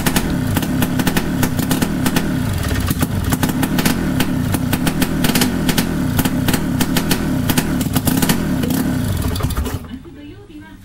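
BMW Isetta's small air-cooled single-cylinder engine running close up, its revs rising and falling over and over as it is blipped.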